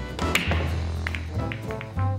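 Swing-jazz background music with brass. About a third of a second in, a single sharp click of a cue tip striking a billiard ball is heard over it, followed later by a few lighter clicks.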